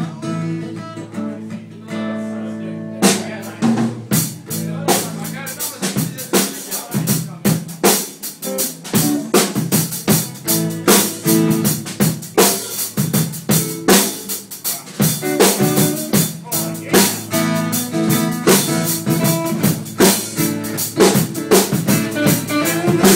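Live blues band playing, with a lap steel guitar over strummed acoustic guitar and electric guitar. Sustained guitar chords open, and about three seconds in a drum beat comes in and keeps a steady rhythm.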